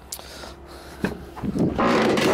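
Chevy Express van front door being opened by hand: a sharp click of the handle and latch about a second in, then a louder, longer noise of the door unlatching and swinging open near the end.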